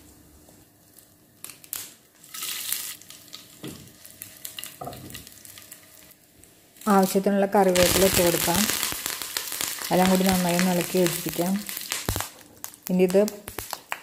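Hot oil in a small pan sizzling loudly from about seven seconds in, as curry leaves and dried red chillies hit it for a tempering of mustard seeds; only faint crackling before that.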